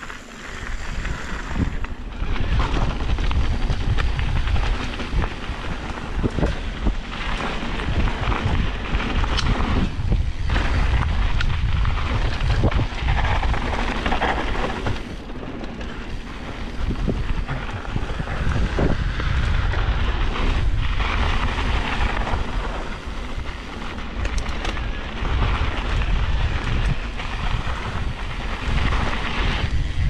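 Wind buffeting an action camera's microphone and mountain bike tyres rolling fast over a dirt and rock trail, a dense rumbling noise that grows louder about two seconds in, with occasional sharp knocks from the bike over the ground.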